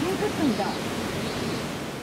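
Steady rush of a rocky gorge river's water running over rocks, with indistinct voices talking in roughly the first second.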